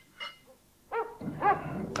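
An animal giving a few short, high-pitched yelps, starting about a second in, after a faint short sound near the start.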